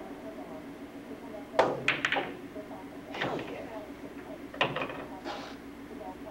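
Billiard shot on a pool table: a sharp clack of the cue ball being struck, then quick clacks of balls hitting one another, and a few more ball knocks a few seconds later. A steady low hum runs underneath.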